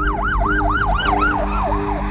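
Police car siren in a fast yelp, each rise and fall repeating about four or five times a second and fading near the end, over a low sustained music drone.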